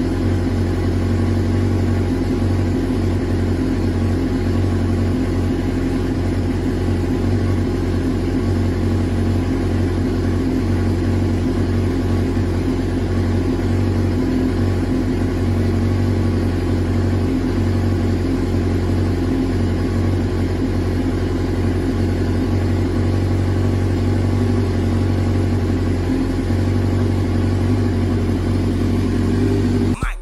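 Turbocharged 2008 Suzuki GSX-R1000 inline-four engine idling steadily on a MaxxECU standalone ECU, its idle speed slowly rising as the ECU fine-tunes itself. The tuner judges it a healthy engine.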